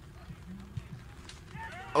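Quiet open-air background with a low steady rumble and faint distant voices, and one faint thud about halfway through: a beach soccer ball struck from the penalty spot.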